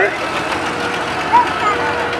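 Engines of vintage commercial vehicles running as they drive slowly past, a steady mixed engine noise with a faint held tone in the second half.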